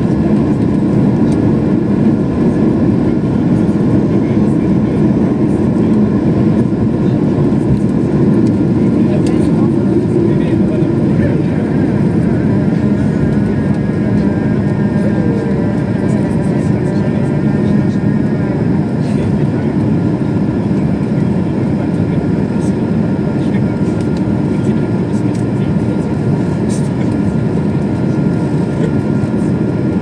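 Cabin noise of an Airbus A220-300's Pratt & Whitney PW1500G geared turbofans at takeoff thrust, heard from inside the cabin: a loud, steady, deep rush through the takeoff roll and liftoff into the climb.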